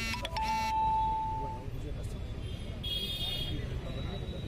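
Street noise of voices and traffic, with a steady horn-like tone lasting about a second from about half a second in, and a shorter, higher beep about three seconds in.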